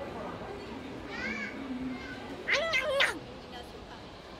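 Background chatter of a crowd with a high-pitched voice crying out twice: a short rising-and-falling call about a second in, then a louder, longer squeal about halfway through.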